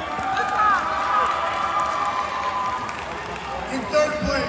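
An announcer's voice over an arena public-address system, a long held, drawn-out call lasting about two and a half seconds, over the chatter of a crowd in a large hall.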